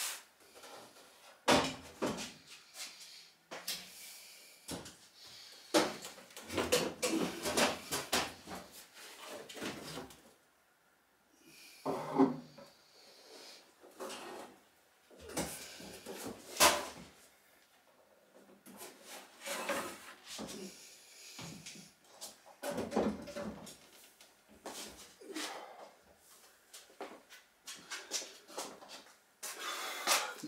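Irregular knocks, clunks and scraping handling noise as the GT40 spider body section is lifted off the chassis by one person, with a couple of short pauses.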